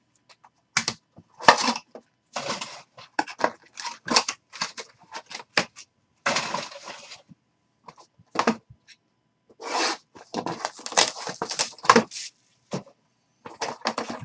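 Hard plastic card cases and cardboard boxes being handled on a table: a run of irregular clicks, taps and scrapes, with short rustles of cardboard.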